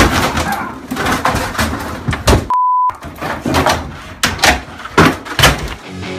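Fans yelling and screaming in outrage at a play on TV, with thumps and bangs in a small room. About two and a half seconds in, a short steady beep bleeps out a swear word.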